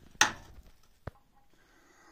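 A sharp knock about a fifth of a second in, then a single small click about a second later, with faint handling noise around them.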